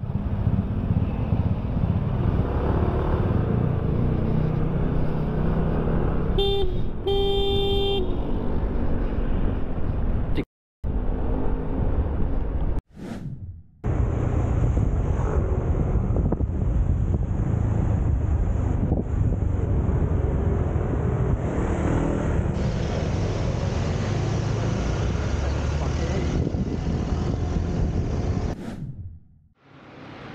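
Continuous wind and road rumble from a motorbike riding through traffic, with a vehicle horn sounding twice, a short toot then a longer one, about seven seconds in. The sound drops out briefly a few times.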